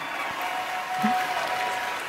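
Audience applause played back from an award-show broadcast clip, just before the winner begins her acceptance speech.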